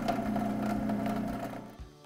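Commercial food processor motor running after slicing carrots into coins, a steady hum that fades away just before the end.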